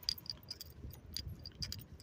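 Light metallic jingling, as of keys carried by someone walking: quick, irregular clinks, with soft footsteps underneath.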